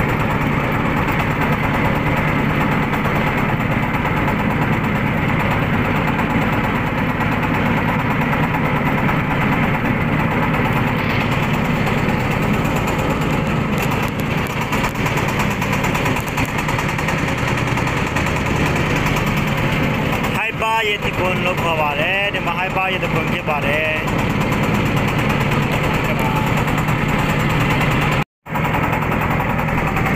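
Motorboat engine running steadily while under way on the water, a continuous low drone. A voice calls out briefly over it about two-thirds of the way in, and the sound drops out for a moment near the end.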